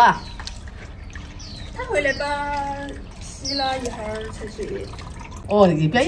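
Hands washing rice in a plastic basin of water, with soft sloshing and dripping as the grains are stirred and lifted out. Short stretches of voice come in about two seconds in, again near four seconds and just before the end.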